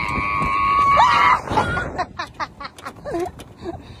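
A person's high-pitched held squeal, about a second and a half long, bending upward as it ends. It is followed by scattered clicks and a couple of brief vocal sounds.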